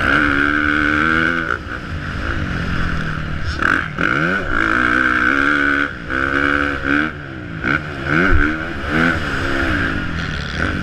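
Motocross bike engine revving hard and then dropping off, over and over as the throttle is opened and chopped, with wind rumbling on the helmet-mounted microphone.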